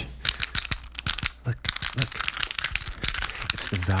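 Rapid, dense clicking and crackling from a plastic action figure handled and tapped close to a microphone. A man's voice comes in near the end.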